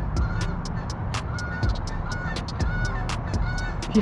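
A bird calling again and again in short, flat notes of the same pitch, about one every half-second to second, with sharp clicks scattered between the calls.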